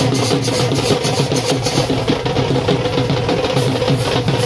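Dhol drum beaten with sticks, a fast, steady run of dense strokes with no break.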